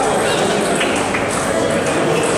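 Busy table tennis hall: many people talking at once, with a few sharp clicks of table tennis balls off bats and tables from play on nearby tables.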